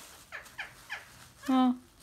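Pet green parrot giving three short, quick chirps that fall in pitch. A louder, drawn-out voiced call follows near the end.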